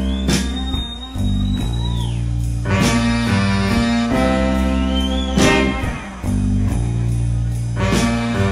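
Live blues band playing an instrumental passage: a steady bass line and drum beat under a long high held note that bends down about two seconds in, and another that slides up around five seconds.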